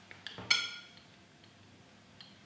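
A glass test tube clinks once, about half a second in, with a short high ring, after a couple of faint ticks; then only quiet room tone.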